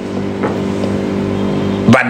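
A man's voice holding one steady, closed-mouth hummed note for nearly two seconds, sliding up in pitch at the very end.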